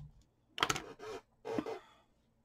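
Hands rubbing and handling paper and washi tape on a journal page: two short bursts of rustling, about half a second in and again near one and a half seconds.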